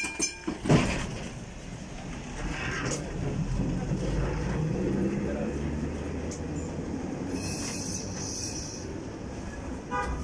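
Vintage two-car tram pulling away and running along the rails: a sharp knock just under a second in, then a low steady rumble of wheels and running gear that builds over the next few seconds and holds as the tram moves off.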